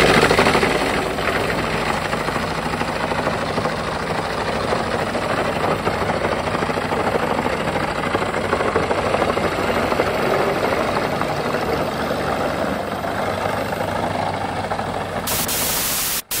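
Tractor-powered forestry wood chipper chipping logs fed in by its crane grapple: a loud, dense, steady crackling noise, loudest in the first second, with the tractor's diesel engine running under load beneath it.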